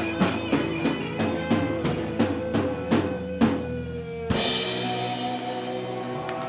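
Live rock band with full drum kit and electric guitars: the drums keep a steady beat of about three hits a second under a long held note, then about four seconds in a final cymbal crash and chord ring out as the song ends.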